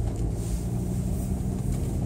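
Steady low rumble of a car's engine and tyres, heard from inside the cabin while driving, with a faint steady hum.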